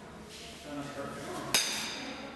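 Baseball bat hitting a ball once about one and a half seconds in: a sharp crack with a brief ringing.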